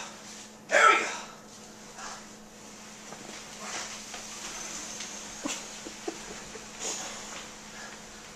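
A short vocal burst about a second in, then a large cardboard box being pushed across a floor: a low scraping with a few sharp knocks.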